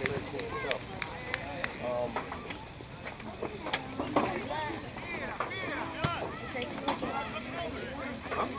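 Distant shouts and calls of players and spectators across an outdoor soccer pitch, short raised voices coming and going, with a few sharp knocks mixed in.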